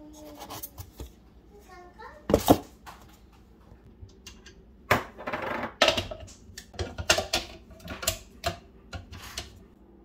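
Clicks, knocks and clatter of hard plastic and metal parts being handled: the KitchenAid slicer/shredder attachment's pieces lifted out of their box and fitted onto the stand mixer, in several short bursts.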